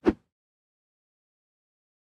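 A short low thud of an edited-in sound effect in the first fraction of a second, then dead digital silence.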